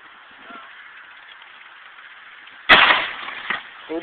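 A dry ice bomb bursting: one loud, sudden bang about two-thirds of the way in that rings out for most of a second, followed by a smaller sharp crack about a second later.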